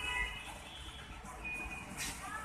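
Faint electronic beeping: a few short, steady high-pitched tones, one early and one just after the middle, over a low steady hum.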